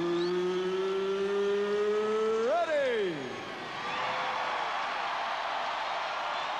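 A ring announcer's voice over the arena PA holds one long drawn-out word, its pitch creeping upward, then lifts and falls away about three seconds in. The arena crowd's cheering swells up after it.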